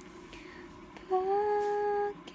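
A person humming one held note that comes in about halfway through, rising slightly and then holding steady.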